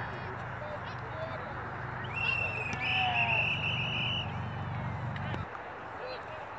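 Spectators' voices along the sideline of a youth football field, with a referee's whistle blown about two seconds in: a high, slightly warbling blast of about two seconds, briefly broken partway through.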